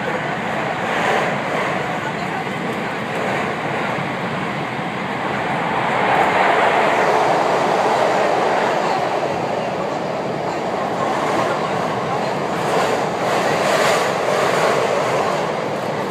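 Cabin running noise of a JR West 521 series electric train under way: a steady noise of wheels on rail with a few faint clicks.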